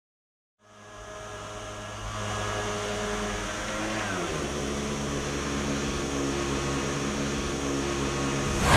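Piaggio Ape 50 three-wheeler's small two-stroke engine running steadily as it drives, fading in just after the start. Its pitch drops about four seconds in.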